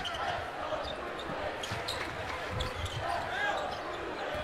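Arena crowd noise during live play of a college basketball game, with faint knocks of the ball being dribbled on the hardwood court.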